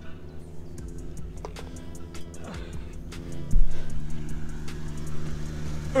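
Steady hum of a greenkeeper's motorised machine running on the course, with one loud dull thump about three and a half seconds in.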